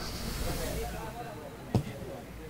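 Faint open-air football-match ambience with distant voices on the pitch, and one short sharp knock near the end.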